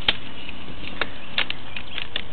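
Sewer inspection camera head and push cable being pulled out of the pipe: a sharp knock just after the start, then a few lighter clicks, a close pair near the end, over a steady hiss.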